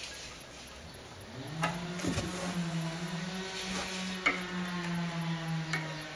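A few sharp plastic-and-metal clicks from electrical spade connectors being worked off the solenoid coil of an LPG tank multivalve. About a second and a half in, a steady low drone starts, rises briefly in pitch, then holds.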